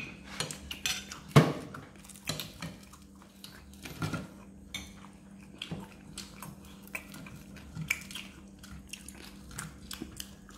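Spoon and ceramic plates clinking and knocking on a metal tabletop as someone eats, in irregular knocks, the loudest about a second and a half in. A faint steady hum runs underneath.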